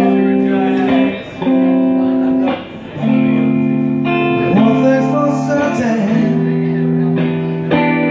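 Electric guitar played live: sustained ringing chords that change every second or two, with brief breaks about a second in and just before three seconds in.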